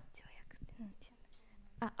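A woman's faint breathy, whispered sounds and a brief soft voiced murmur close to a handheld microphone, as she hesitates between spoken phrases.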